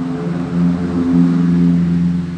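A motor vehicle's engine running close by, a steady low hum that swells about half a second in and starts to fade near the end.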